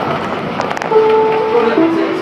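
Two-note descending electronic chime on board a Calgary CTrain light-rail car: a held higher note about a second in, then a held lower note near the end. It is the chime that comes before the station announcement, over the steady noise of the moving train.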